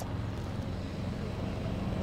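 Steady low outdoor background rumble, the ambient bed of a harbourside.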